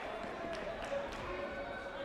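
Sports hall ambience: distant voices carrying through the hall over a background of room noise, with a few soft thuds.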